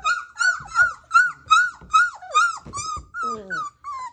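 Four-week-old standard poodle puppy whining in a quick run of short, high yelps, about three a second, each dropping in pitch at its end: the puppy is complaining.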